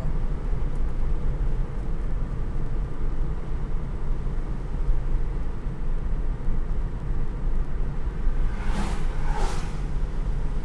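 Interior cabin noise of an electric-converted Toyota Tercel on the move: a steady low tyre and road rumble with no engine sound. A brief rushing sound comes near the end.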